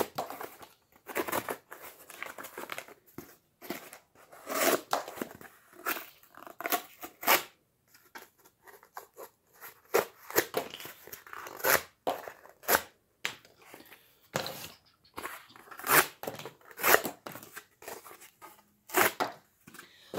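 A Gerber Asada cleaver-blade folding knife slicing through cardboard scraps: a string of short, irregular rasping cuts, about one or two a second, the sharpened edge going through the cardboard easily.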